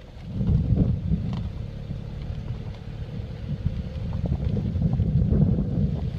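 Wind buffeting the microphone: a gusting low rumble that swells about half a second in and again near the end.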